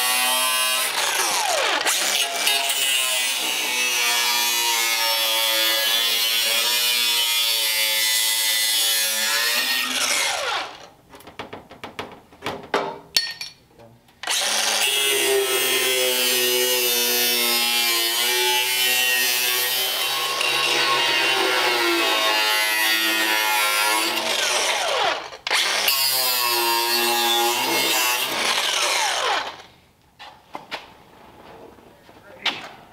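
Hand grinder with an abrasive disc grinding the steel of a car firewall, running in three long stretches whose whine rises and sags in pitch as the disc is pressed into the metal. Between the first two runs there is a few-second pause of light clicks and knocks, about ten seconds in.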